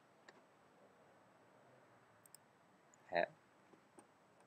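Near silence: a faint steady hiss with a small click early and a couple of faint ticks, then a short spoken 'Hä?' about three seconds in.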